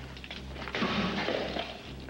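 A glass-fronted picture frame is thrown and smashes, its glass breaking with a crash about a second in.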